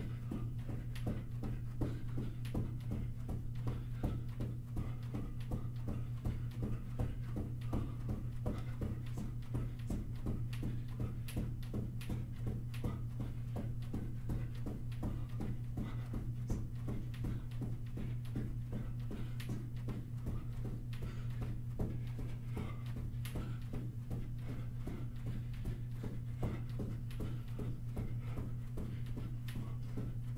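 Sneakered feet running in place on a carpeted floor: rapid, even footfalls, over a steady low hum.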